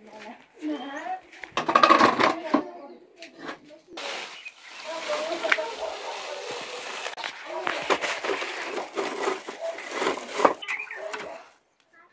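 People's voices talking, with the rustle of dry grass and twigs being stuffed into a small metal stove from about four seconds in.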